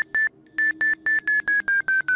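FlySight GPS audio tone, simulated by FlySight Viewer: a rapid train of short, high beeps, about five a second, at one pitch that sags a little near the end, with a brief pause about a quarter second in. The pitch and rate of the beeps track the skydiver's measured flight data.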